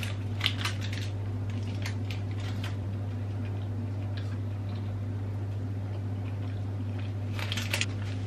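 A steady low hum under faint clicks and rustles from chewing a blueberry muffin and handling its paper case, with a short rustle of the case near the end.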